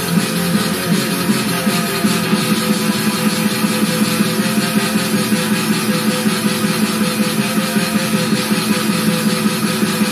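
Electric guitar with an 18-equal-tempered (18 frets per octave) microtonal neck, five strings tuned to a sort of drop D, played through a small Ibanez Tone Blaster amp: a fast, evenly picked death/thrash metal riff that runs without a break.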